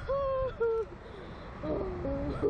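A woman's drawn-out high 'ooh' cries while riding a slingshot thrill ride: two held notes in the first second, the second shorter and falling, then more voice near the end. Wind rumbles on the microphone underneath.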